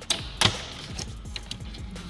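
Plastic dashboard trim being pried off with a plastic trim tool: one sharp click of a clip popping loose about half a second in, then a few lighter clicks and taps.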